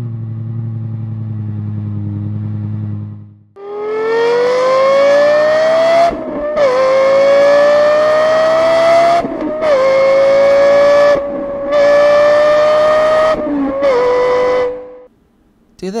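Lexus LFA's 4.8-litre V10 holding a steady note for about three seconds. Then, at full throttle, its pitch climbs hard through the gears, dipping briefly at each of about four quick upshifts before climbing again.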